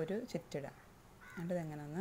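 Speech only: a voice talking in two short phrases, the second one drawn out near the end.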